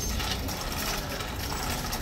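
A steady, even mechanical rattle.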